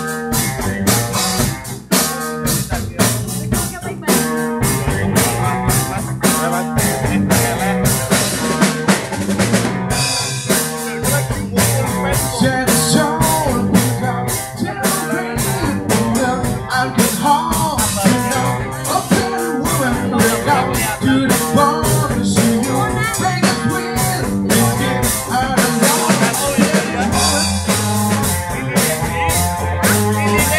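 Live blues band playing an instrumental passage: a drum kit keeping a steady beat with bass drum and snare, over electric guitar and bass guitar.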